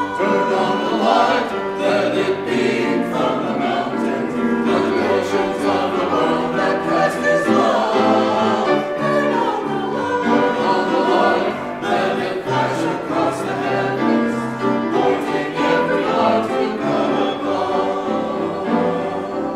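Church choir singing an upbeat anthem in parts, with piano accompaniment, in a reverberant sanctuary.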